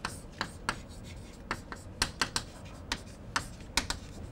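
Chalk writing on a chalkboard: a string of sharp, irregular taps as the chalk strikes the board, with faint scratching between them.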